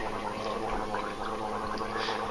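A man gargling a mouthful of beer, a steady bubbling rattle in the throat.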